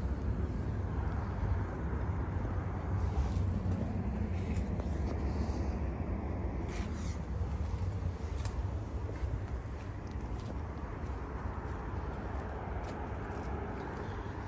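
Steady low outdoor rumble with a light hiss, and a few faint taps of footsteps on concrete as someone walks between parked cars.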